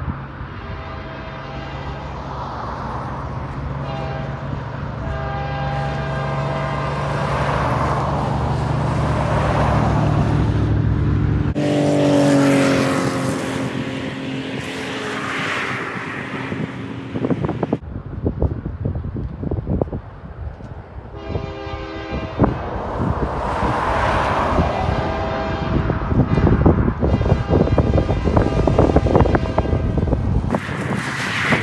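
Diesel train passing: the locomotive engine running with a steady low drone while its horn sounds in several short and long blasts, and rapid clacking in the later part. The sound cuts abruptly twice.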